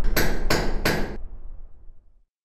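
Closing sound logo: three sharp hammer strikes about a third of a second apart, each ringing briefly, over a low bass rumble that fades out near the end.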